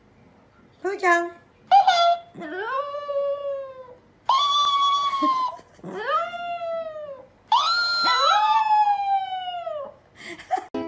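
Chihuahua howling: two short yips about a second in, then four long howls that each rise and slowly fall.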